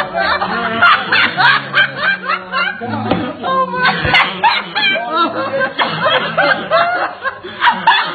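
Several people snickering and laughing, held back in short bursts, with a single knock about four seconds in.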